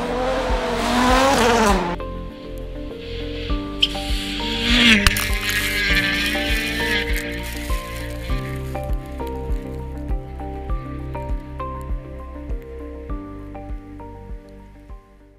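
Background music with a steady beat, over which a Toyota Yaris WRC rally car's engine revs up and down as it passes, once in the first two seconds and again around five seconds in.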